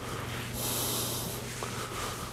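A man's breath through the nose, a soft hiss lasting about a second, over a steady low hum in the room.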